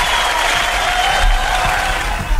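Applause and cheering sound effect with music under it, played as the studio's signal of a correct answer.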